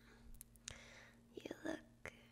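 A woman whispering softly, with a few faint clicks between the words.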